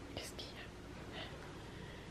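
Faint whispering: a few short, breathy sounds near the start and again about a second in.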